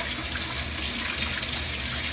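Water running from a rubber hose, splashing through a mesh ice-machine filter and into a mop sink basin, a steady even rush.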